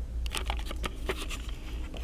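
Plastic wrapping on packs of toilet paper rustling and crinkling in a string of short, irregular crackles as they are brushed against, over a low steady hum.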